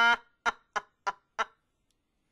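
Rhythmic laughter in short 'ha' bursts: the end of a long held note, then four quick laughs about a third of a second apart, cut off suddenly into silence.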